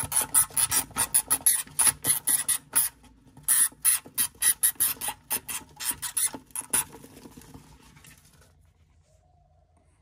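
Hamster gnawing on a metal water-bottle spout: a rapid run of sharp rasping clicks, about four to five a second, with a brief pause partway and stopping about two-thirds of the way through.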